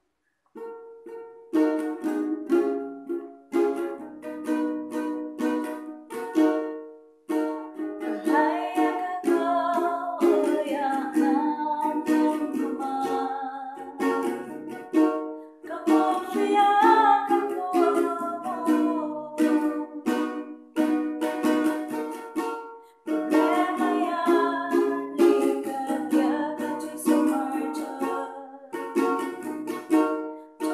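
A ukulele strummed in a steady rhythm, joined partway in by a woman singing a Kankana-ey gospel song.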